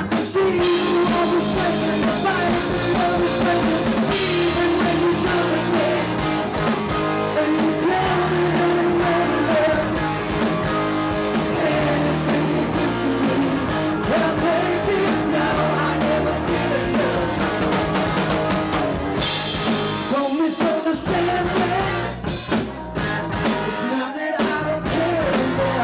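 Live rock band playing, with electric guitar, bass and drum kit. A bright cymbal wash runs through the middle stretch, and the band drops back briefly about twenty seconds in.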